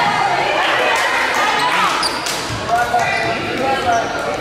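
Many voices of players and spectators talking and calling out in an echoing gymnasium, with a volleyball bouncing a few times on the hardwood court.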